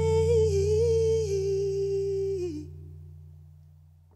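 The song's final held note: a woman's voice sustains a wordless note that wavers a little, then slides down and stops about two and a half seconds in. Beneath it a low bass note rings on and fades out.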